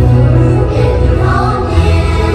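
Live concert music: a choir singing long held notes over instrumental accompaniment with a strong, steady bass.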